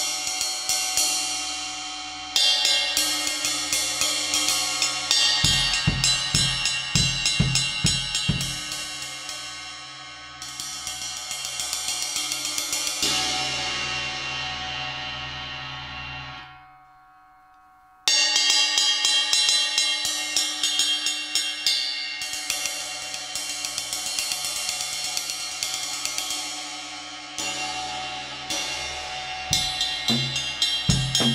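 1960s Zildjian ride cymbal fitted with six rivets, played with a drumstick in a quick, steady ride pattern over its ringing wash. Low thumps sound under it for a few seconds about a third of the way in. Around the middle the strokes stop and the cymbal rings on and fades, then cuts off suddenly; after a short gap the stick playing starts again.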